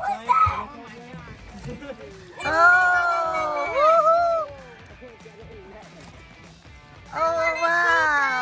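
Two long, drawn-out voiced cries, each held and falling slowly in pitch. The first comes about two and a half seconds in and the second near the end.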